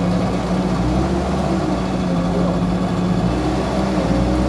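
Diesel engine of a Volvo MC-series skid-steer loader running steadily while the loader is driven into a dirt pile, its pitch wavering slightly as it takes load. The push is a test of whether the drive locks up when the machine strains.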